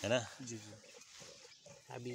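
A man's voice finishing a short word, then faint outdoor background with a few soft clicks.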